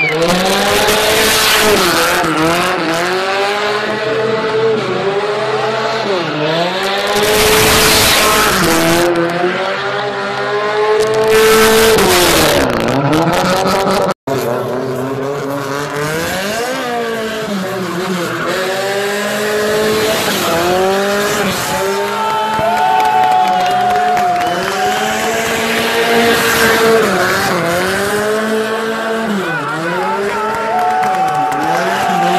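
Naturally aspirated Tofaş engine revved up and down over and over, every two or three seconds, as the car drifts in circles, with loud tyre screeching in several bursts. The sound drops out for an instant about halfway through.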